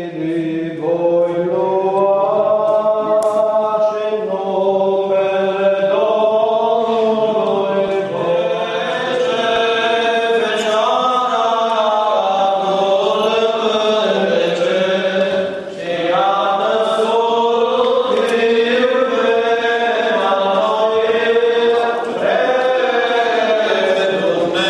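Orthodox liturgical chant sung during the church wedding service: a slow, ornamented melody over a steady low held note, with a brief pause for breath about two-thirds of the way through.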